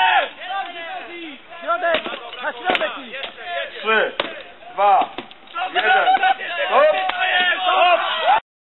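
Several sharp clashes of steel swords striking shields and armour in a full-contact armoured duel, with spectators shouting and calling throughout.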